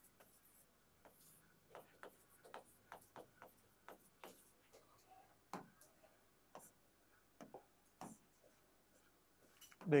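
Faint pen strokes and taps on an interactive display's screen, as a heading is written and the pen tools are picked: a scatter of short light clicks with soft rubbing between them.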